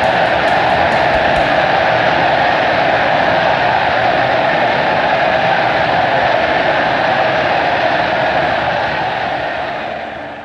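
Large crowd cheering and applauding, loud and steady, fading down near the end.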